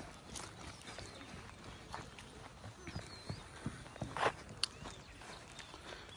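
Faint, irregular footsteps on grass over a low outdoor hiss, with a few sharper clicks around the middle.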